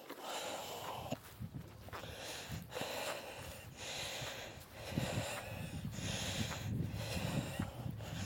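Footsteps swishing through grass at a walking pace, a soft thud and rustle about once a second.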